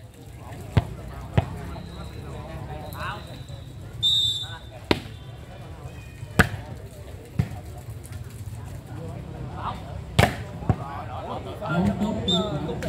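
A football struck by bare feet in a foot-volleyball rally on sand: a string of sharp thuds at irregular intervals, about seven in all, the loudest near the start, at about six seconds and at about ten seconds.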